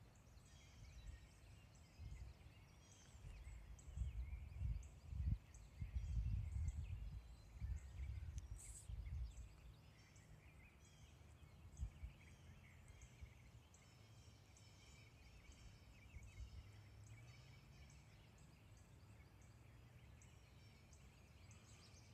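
Faint woodland ambience: small birds chirping now and then, with low rumbling on the microphone in bursts during the first half.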